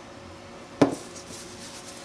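A small bottle set down on a tabletop with one sharp knock a little under a second in, followed by faint rubbing as it is let go.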